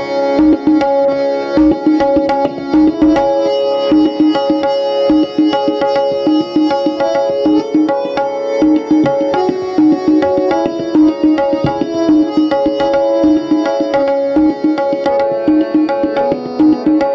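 Tabla solo in teentaal: fast, dense strokes on the tabla pair over a harmonium holding a steady repeating melody (lehra), with deep bass strokes on the bayan in the first few seconds.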